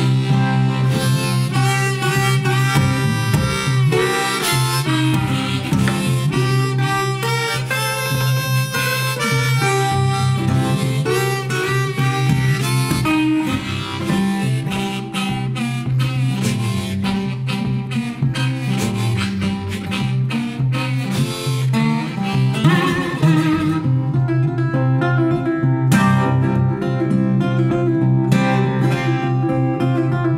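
Instrumental country blues on harmonica and archtop guitar: a rack-held harmonica wails over a guitar keeping a steady, repeating bass rhythm. The harmonica drops out about three-quarters of the way through, leaving the guitar playing on alone.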